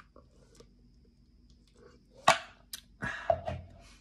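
Drinking from a plastic cup of ice water: a quiet start, then one sharp clack a little past halfway and a short breathy sound soon after.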